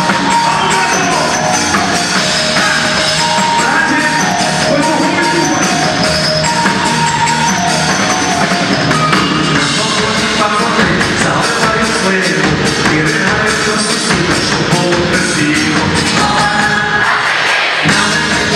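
A live pop-rock band playing through a PA system, with a steady drum beat and held keyboard tones, heard from high up in a large shopping-mall atrium.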